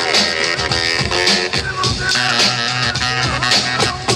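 Hip hop DJ set on turntables: a loud beat playing continuously, with the record being scratched and cut over it.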